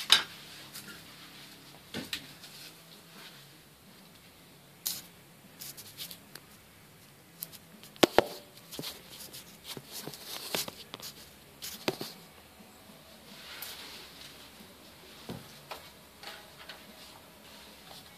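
Scattered light clicks and knocks of objects being handled, quiet, with no drill motor running; the sharpest knock comes about 8 seconds in.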